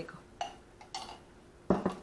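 A few light clinks and knocks of kitchenware as a fork and a glass jar are handled and set down, the loudest a sharp knock shortly before the end.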